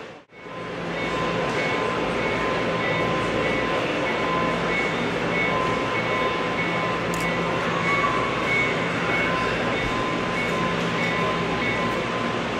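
HO-scale model diesel switcher running slowly, heard as a steady hum with a high tone pulsing about twice a second, over steady background noise. The sound drops out briefly just after the start.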